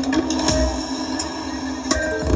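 Music played loud through a large outdoor PA of JIC speakers (DN 75 tweeters, LS 12075 mids, LS 18125 lows and subs), with sharp percussive hits over a steady bass.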